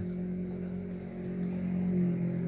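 A steady low machine hum, holding one even pitch throughout.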